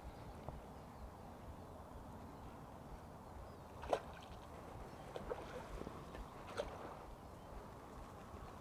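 Faint splashing of a hooked roach at the water's surface as it is played toward the landing net. There are a few short, sharp splashes about four, five and six and a half seconds in, over a steady low hiss of river water.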